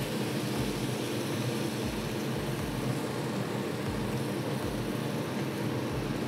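Steady, even rushing noise from a commercial kitchen's extractor canopy and lit gas range.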